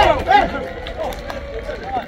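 Crowd chatter: several people talking over one another, louder in the first half-second and fainter after.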